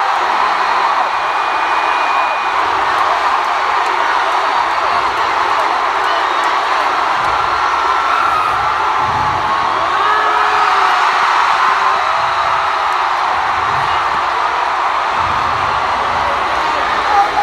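Large arena crowd cheering and screaming steadily, with single high shouts rising out of the din now and then.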